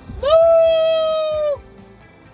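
A woman's voice giving one long, high "woo" call in imitation of a cow's moo. It swoops up, holds steady for over a second, then drops away.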